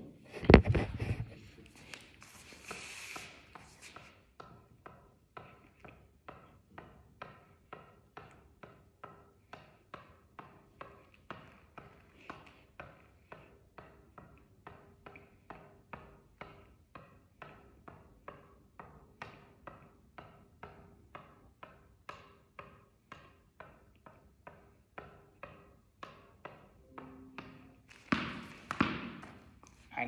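Tennis ball being tapped straight up off the strings of a tennis racket, over and over: a steady run of light taps about two a second. It opens with a louder thump and some rustling, and there is a louder noisy stretch near the end.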